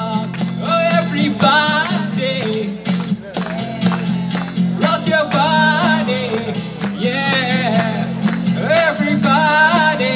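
Live music: a man singing over a steadily strummed acoustic guitar, amplified through a PA.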